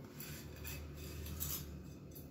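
Faint rustling and scraping of roasted vermicelli being tipped from a steel bowl into a pressure cooker of soaked sago and water, with hands pushing the dry strands in.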